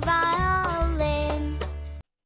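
Children's phonics song: a child's singing voice over a backing track with a steady bass line.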